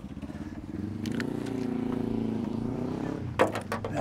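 A motor vehicle engine running nearby, swelling over about two seconds and then fading, as a vehicle passes or pulls through the car park. Near the end come a few sharp clacks, like folding metal furniture being handled.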